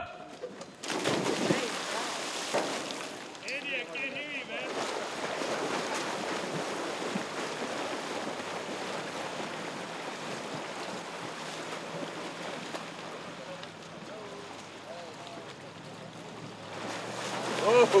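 Competitive swimmers diving into a pool off starting blocks, then the steady churning splash of several swimmers sprinting butterfly side by side.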